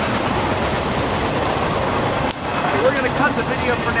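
Wood campfire in a steel fire ring crackling and hissing steadily, with one sharp click a little past halfway.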